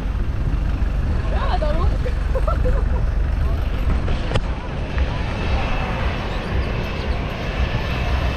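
Private jet on final approach, its engines a faint high whine that comes in about halfway through over steady wind and surf noise.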